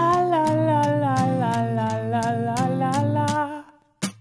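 Pop-rock song: a sung 'la la la' line over a steady beat, cutting off abruptly shortly before the end.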